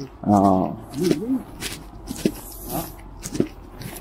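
A dog whimpering in a few short, high whines, over footsteps crunching on packed snow.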